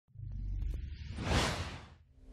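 Logo sound effect: a low hum with a few light ticks, then a whoosh that swells about a second and a half in and dies away.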